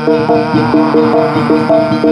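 Live jaranan accompaniment music: a melodic instrument playing a quick run of steady, stepped notes, several a second, over percussion.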